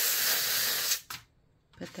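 A hot, freshly annealed copper wire coil dropped into a bowl of quench water, hissing loudly as it cools. The hiss cuts off about a second in.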